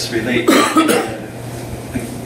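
A man coughs, a sudden loud cough about half a second in, followed by a quieter stretch with a steady low hum.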